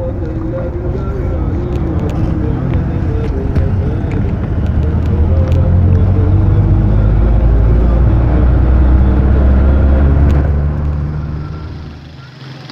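Low, steady road rumble of a vehicle ride that grows louder towards the middle and fades near the end, with voices faintly under it.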